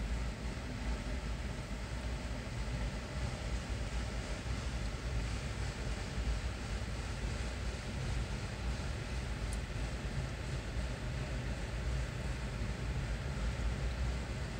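A train of empty autorack freight cars rolling past, giving a steady, unbroken rumble of wheels on the rails.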